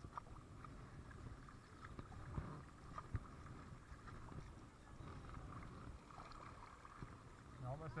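Faint water sounds of a kayak paddle dipping and pulling through calm river water, with a few light knocks, over a low wind rumble on the microphone.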